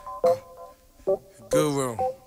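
Touch-tone telephone keypad beeps, short steady tones, in a hip-hop track's intro. About a second and a half in, a deep pitched sound slides downward.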